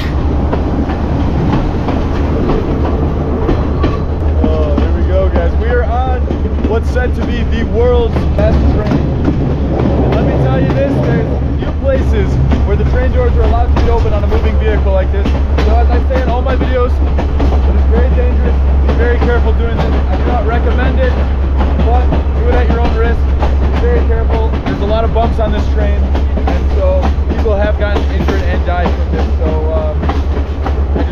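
Sri Lanka Railways S14 diesel multiple unit running along the track, heard from an open doorway: a steady low rumble with the clickety-clack of wheels over rail joints throughout.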